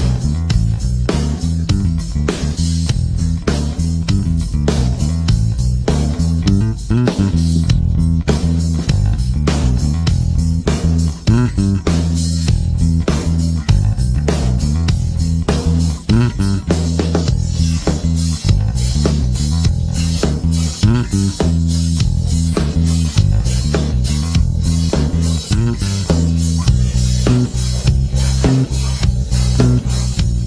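Fender American Professional II Jazz Bass played solo, a busy funk-style line of continuous plucked notes with sharp attacks.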